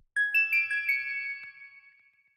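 Electronic music: a short melody of high, bell-like synth notes that ring on and fade away near the end, with no drums under them.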